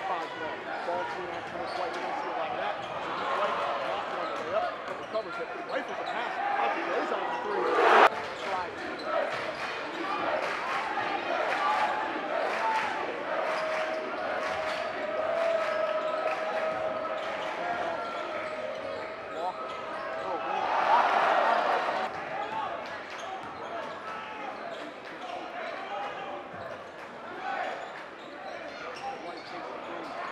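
Live gym sound of a high school basketball game: a basketball dribbled on the hardwood floor, sneakers squeaking and spectators' voices in a large, echoing gym. A single loud sharp bang comes about eight seconds in, a steady held tone runs for several seconds in the middle, and the sound swells briefly about twenty-one seconds in.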